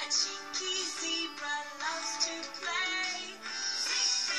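Children's cartoon theme song: singing over backing music, heard through a television's speaker.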